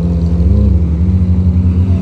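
Ferrari 458's V8 engine running at low revs close by as the car moves off slowly, with a slight rise in pitch about half a second in.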